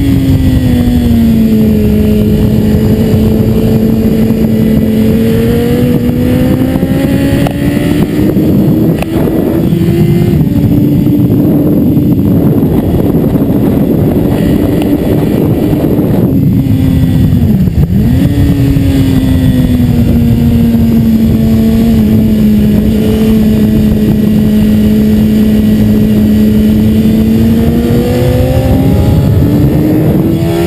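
BMW S 1000 RR sport bike's inline-four engine pulling at track speed, with a steady rush of wind. The engine note drops at the start, then climbs slowly and shifts suddenly about a third of the way in. It dips sharply a little past the middle, holds steady for a long stretch and rises again near the end.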